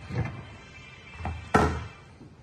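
Knocks and thuds of a squeegee being set down and a plastic jar of screen-printing transparent base being grabbed on a steel worktable: a sharp knock just after the start, a softer one about a second in, and the loudest thud near the end.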